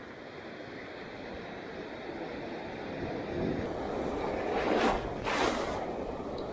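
Shallow surf washing up over sand, with wind noise on the microphone. The wash swells through the clip, with two louder hissing rushes of water near the end.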